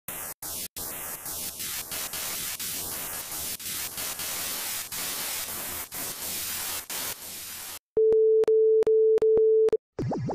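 Television-style static hiss, broken by brief dropouts, with faint falling sweeps. About two seconds before the end it switches to a steady mid-pitched beep tone broken by several short gaps.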